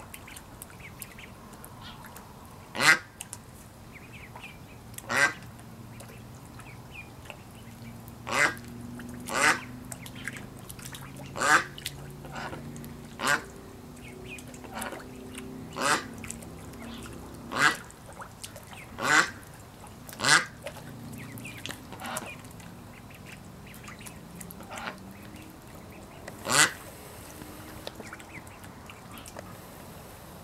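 Ducks quacking: about a dozen loud, single short quacks, spaced one to three seconds apart.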